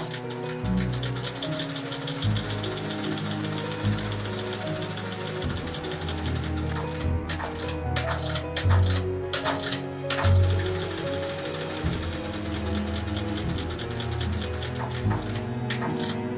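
Industrial sewing machine stitching leather in rapid runs, stopping and starting a few times around the middle. Background music plays throughout.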